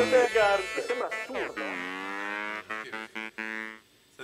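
A man's voice at a microphone, a few quick vocal sounds, then a slide down into one long drawn-out low note held for about two seconds. The audio drops out briefly several times and stops suddenly just before the end.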